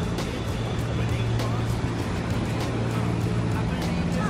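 City street traffic, with a steady low engine hum, mixed with background music that has a steady beat.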